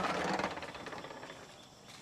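Stainless-steel gate being swung open, a brief scraping rattle that fades out within about a second.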